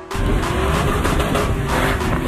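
A car at high revs with tyre screech, under a hip hop music track.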